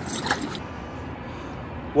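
Water splashing and scraping as a fish thrashes in the shallows at the bank, cut off about half a second in. Then a steady, fairly quiet outdoor background hiss.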